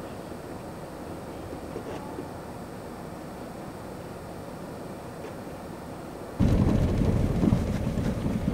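Steady muffled background rumble heard from inside a car. About six and a half seconds in, it jumps suddenly to a much louder, uneven low rumble.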